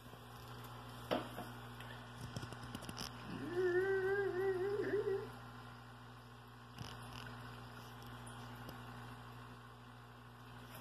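A person hums one sustained, slightly wavering note for about two seconds, starting a little past three seconds in. A faint steady low background hum runs throughout, with a few soft handling clicks.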